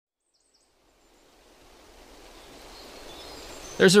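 Outdoor natural ambience fading in: a soft, even rush of background noise that grows steadily louder, with a few faint high chirps near the start. A voice begins right at the end.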